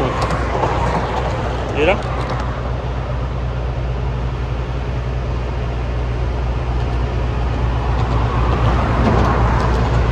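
Highway traffic passing, a rolling road noise that grows toward the end, over a steady low engine hum.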